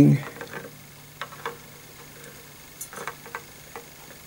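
Faint, scattered light clicks and ticks of a metal string action ruler and fingertips touching the strings of an acoustic guitar while the string height is measured, about half a dozen over a few seconds.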